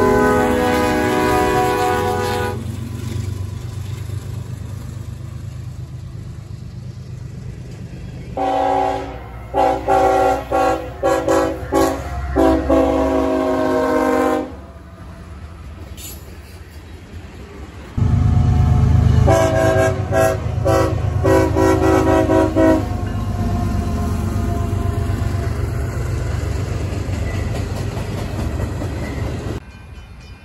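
Diesel freight locomotive air horns sounding chords in several series of short and long blasts, over the low rumble of freight trains passing close by. The sound jumps abruptly between separate clips.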